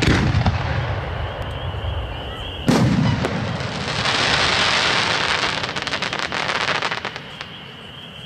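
A 4-inch aerial firework shell. The rumble of its launch fades as it climbs, then it bursts with a sharp bang a little under three seconds in. About three seconds of loud hiss with fine crackling follow the burst and die away near the end.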